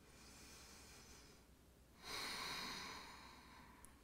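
A woman's slow, quiet exhale during a held yoga stretch, starting about two seconds in and fading away over a second and a half.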